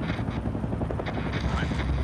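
Helicopter rotors chopping steadily, with a deep rumble that grows louder about one and a half seconds in.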